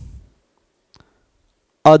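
A man's voice trails off, then a quiet pause with one faint tick about a second in, a stylus tapping the writing tablet as he writes, before the voice resumes near the end.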